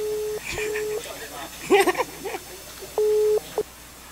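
Telephone ringback tone from a smartphone's loudspeaker while an outgoing call rings unanswered: a steady low beep in a double ring, two short tones close together and then a pause of about two seconds before the next. A voice breaks in briefly between the rings.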